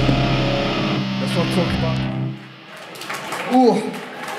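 Live heavy band ending a song: distorted electric guitars and bass hold a final chord that rings on, then cut off about two seconds in. A short voiced shout follows near the end.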